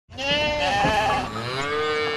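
Sheep bleating twice: a short wavering bleat, then a second, longer bleat.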